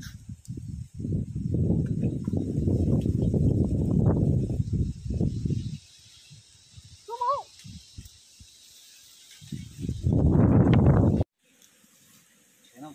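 Loud, low rumbling noise in the first half, easing off about six seconds in and returning near the end before cutting off suddenly, with a short vocal call in the quiet stretch between.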